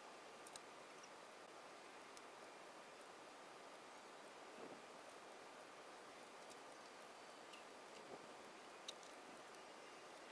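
Near silence: faint room hiss with a few soft, isolated clicks.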